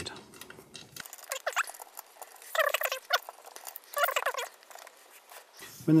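Small clicks and knocks of the RP Toolz cutter's anodised-aluminium stop block being undone and moved on the base, with two short squeaky rubbing sounds about two and a half and four seconds in.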